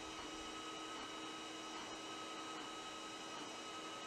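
Faint steady electrical hum and hiss with a thin, constant high whine; nothing starts or stops.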